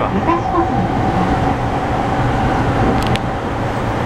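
Interior running noise of an E231 series commuter train under way: a steady low rumble of wheels on rail with a steady whine held over it, and a short click a little after three seconds.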